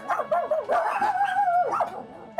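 Several dogs barking and yipping, with one long whining howl lasting about a second in the middle.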